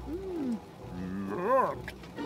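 Wordless vocal sounds from a cartoon character: a short falling hum, then a louder rising-and-falling 'ooh' about a second and a half in, over a low rumble.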